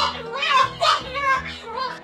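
Cockatoo chattering in a speech-like, human-mimicking voice in short bursts, with a song playing in the background.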